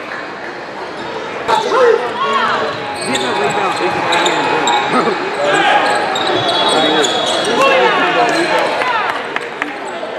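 Basketball game on a hardwood gym court: sneakers squeak in many quick rising and falling chirps and the ball bounces, with voices echoing around a large hall.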